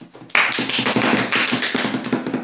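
Hands clapping: a quick, dense run of claps that starts suddenly about a third of a second in and stops just before the end, like applause after a guest is introduced.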